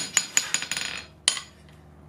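Hand hammer striking small red-hot steel on an anvil. Three blows come about five a second, then a quick run of light ringing taps and one last blow a little after a second, before the hammering stops. This is the rounding-off of a forged hand's thumb and fingers.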